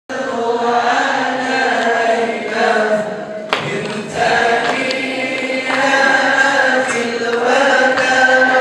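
A group of voices chanting a melody together in long held notes, with one sharp click about three and a half seconds in.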